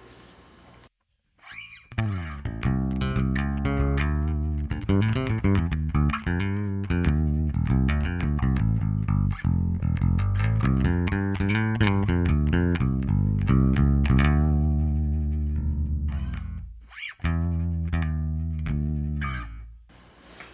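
Ibanez ATK810 electric bass played through an amp, its treble control turned up: a run of plucked bass notes with bright attacks. It starts after a second of silence and has a short break near the end.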